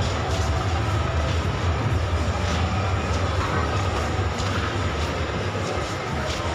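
Shopping-mall ambience: a steady low rumble with faint background music over it.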